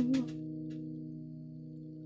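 A man's sung note ends a moment in, leaving a held chord on a digital piano that fades slowly.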